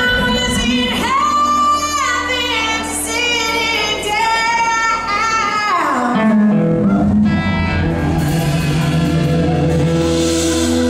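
Live blues-rock band in a large hall: a woman sings long, sliding held notes over electric guitar, bass and drums. About six seconds in the voice drops away and the lower band parts carry on.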